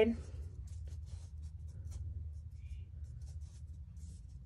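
Faint scratchy strokes of a paintbrush dabbing thick acrylic paint onto canvas paper, a few irregular strokes each second, over a steady low hum.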